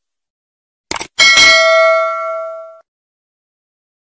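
A short mouse-click sound effect, then a bright notification-bell ding that rings for about a second and a half before cutting off abruptly: the stock sound of a YouTube subscribe-and-bell animation.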